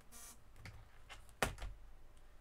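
A few light clicks and taps, then one sharp knock about one and a half seconds in: handling noise from things moved about on a craft desk.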